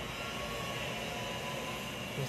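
Steady background noise with a faint high tone running through it, and no sudden sounds.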